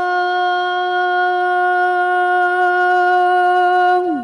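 A muezzin's voice singing the adhan, holding one long steady note at the end of a phrase of the shahada.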